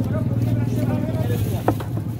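A steady low engine hum, with faint voices behind it and one sharp knife tap on the wooden cutting block near the end.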